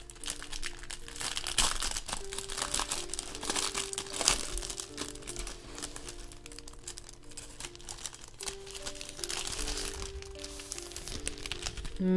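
Clear plastic wrapping crinkling as it is peeled and pulled off a book, in irregular crackles, over soft background music.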